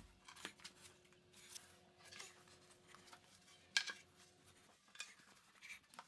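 Faint, sparse scrapes and taps of large porcelain floor tiles being handled and set on a shower floor, with a sharper tap about four seconds in. A faint steady hum runs under the first few seconds.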